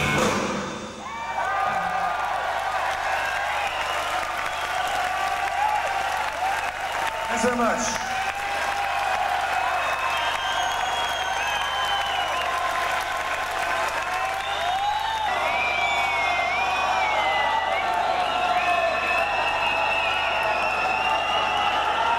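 A rock band's final chord cuts off, then a concert crowd cheers and applauds steadily, with shouting and wavering whistles.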